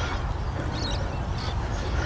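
Outdoor ambience through a clip-on mic: a low, uneven rumble with faint distant bird calls.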